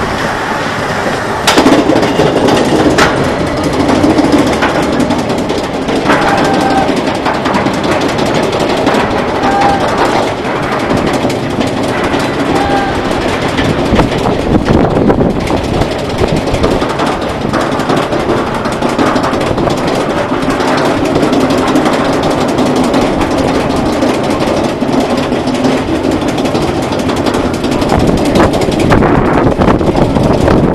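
Roller coaster train being hauled up a chain lift hill: a steady mechanical rattle with rapid clacking.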